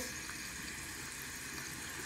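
Bathroom tap running steadily into the sink.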